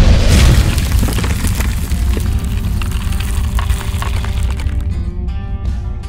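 Logo-reveal music sting: a loud, deep hit at the start whose rumble slowly fades, with steady sustained musical notes coming in about halfway through.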